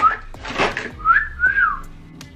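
A woman whistling through pursed lips: a short rising note, a brief rush of noise, then two quick whistled notes that each rise and fall, the last sliding down.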